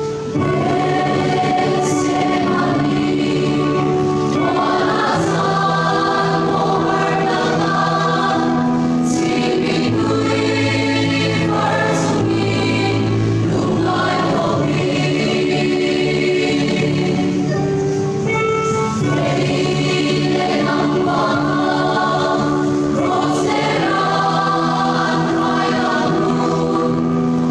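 Church choir singing a hymn in parts, the voices holding long chords with sung words hissing through now and then.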